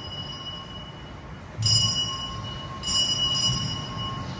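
A metal ritual bell struck twice, about a second apart, the first stroke coming about one and a half seconds in; each stroke rings on with a clear, high, layered tone that fades slowly.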